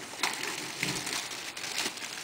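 Packing material rustling and crinkling inside a cardboard shipping box as items are lifted out, with a few light knocks.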